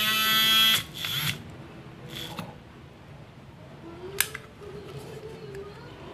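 Small battery-powered handheld whisk (a milk-frother-style egg beater) whining at speed for under a second, then cutting off, with a second short burst after it. Its coil whisk is in thick henna paste, which it cannot mix. After that there are only a faint hum and a few light clicks.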